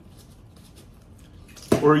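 Faint small clicks of a jar's screw-top lid being twisted by gloved hands, then a man's voice starts near the end.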